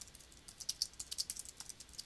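Typing on a computer keyboard: a quick, irregular run of light keystrokes.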